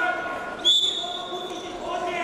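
A referee's whistle blown once, a single shrill held note of about a second, signalling the wrestlers to resume, over shouting voices in an arena.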